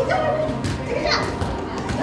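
Children's voices calling out as they play in a large, echoing hall.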